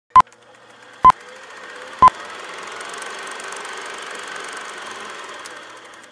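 Film-leader countdown sound effect: three short, loud beeps at one pitch about a second apart, one for each number of the countdown. Then a steady hiss with fine crackle swells in and holds, fading away near the end.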